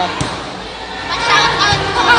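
Children's voices and chatter, with one sharp thud just after the start.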